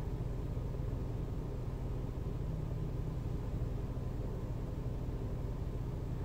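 Steady low rumble of a car, heard from inside the cabin, with no clear change.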